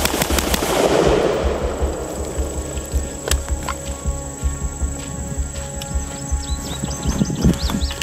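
A rapid string of AR-15 rifle shots, the end of a Bill drill, in the first half-second, ringing out afterwards. Background music plays throughout.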